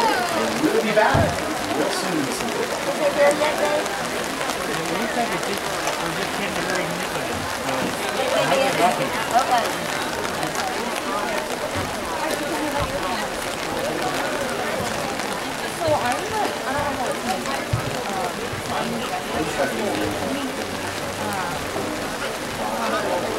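Indistinct, overlapping voices over a steady hiss of falling rain.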